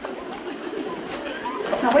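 Several voices chattering over one another, growing steadily louder.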